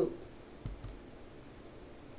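A single soft click with a low thump about two-thirds of a second in, over faint room tone.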